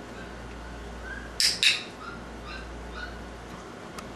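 A dog-training clicker snapping twice in quick succession (press and release), sharp and loud, marking a young Border Collie puppy's correct behaviour. Faint short high squeaks come and go around it.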